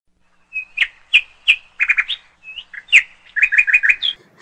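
Bird chirping: short, sharp chirps, some single and some in quick runs of three or four, starting about half a second in.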